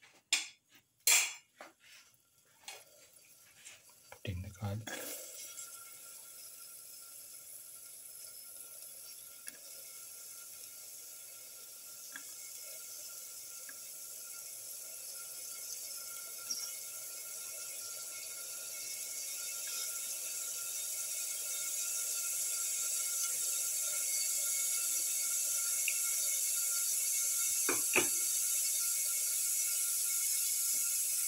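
Sliced garlic cloves clattering into a steel pan of hot oil in the first few seconds. Then they fry, with a sizzle that grows steadily louder as the oil heats. A single knock comes near the end.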